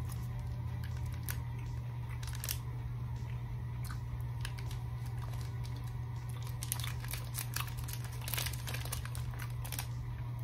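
Foil-type snack bar wrapper crinkling in the hands and a person chewing a bite of a granola-like bar, with scattered small crackles that come more often in the second half, over a steady low hum.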